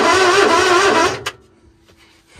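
Starter motor of a John Deere Gator straining against a seized engine: a loud, wavering buzzing groan that fails to turn the engine over and cuts off about a second in with a click.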